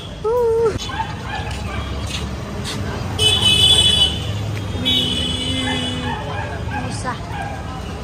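Caged budgerigars chirping in high bursts over steady street and crowd noise, with a person's short 'oh' at the start.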